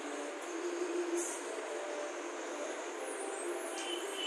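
Steady rushing background noise.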